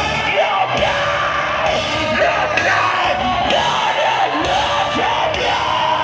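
Loud live mathcore band playing, with distorted guitars, drums and yelled vocals, recorded from inside the crowd.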